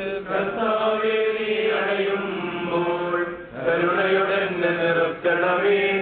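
A priest chanting a liturgical prayer into a microphone in long, held sung phrases, with short breaks about three and a half and five seconds in.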